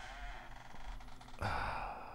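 A person sighing: a soft, breathy sound with a faint wavering pitch, then a louder exhale about one and a half seconds in.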